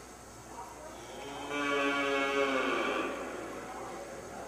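A cow mooing once, a single drawn-out call about a second and a half long that starts about a second and a half in and falls slightly at the end.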